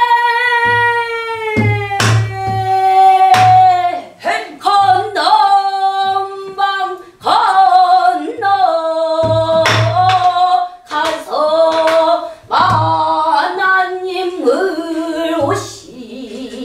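A woman sings pansori, holding long notes with a wide, wavering vibrato and sliding between pitches. A buk barrel drum accompanies her with low thuds and sharp knocks at irregular intervals.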